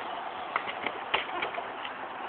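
Longboard wheels rolling on parking-lot asphalt, a steady rolling rumble with several short sharp clicks.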